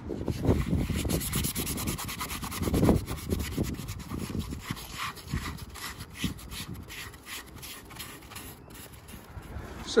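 A cloth rubbing quickly back and forth over the plastic taillight lens of a Toyota MR2 Spyder, wiping off plastic dip residue. The strokes are irregular and scrubbing, loudest in the first few seconds and lighter toward the end.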